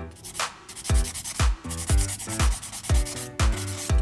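Hand nail file rasping back and forth over a gel nail, abrading through layers of cat-eye gel polish to expose the colours beneath. Background music with a steady kick-drum beat of about two thumps a second runs underneath and is the loudest sound.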